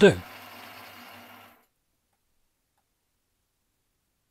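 A man's voice finishes a word, a faint hum trails for about a second and a half, then complete silence.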